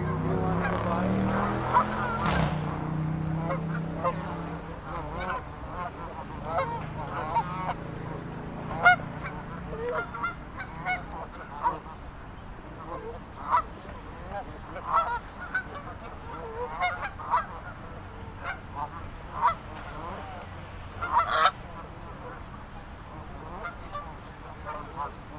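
A flock of Canada geese honking: short, scattered honks from different birds every second or two. A low steady drone runs under the first half and fades out about ten seconds in.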